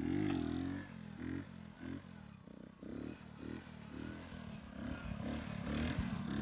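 Honda CD70's small single-cylinder four-stroke engine revving up and down in short pulses, about twice a second, as the throttle is pumped lightly to hold a wheelie. It is heard at a distance and is loudest in the first second.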